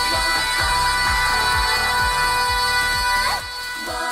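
Three female J-pop idol singers holding one long note together for about three seconds, ending with a short sliding note. Under it a kick drum beats about twice a second, with the rest of the backing music mostly filtered out.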